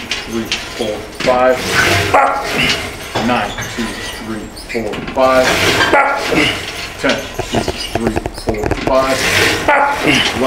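A man's strained grunts and vocal exhalations, coming roughly once a second, from the effort of a heavy set of lat pulldowns.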